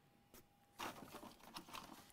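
Near silence with a faint steady hum, then faint crackling and rustling noises in the second half.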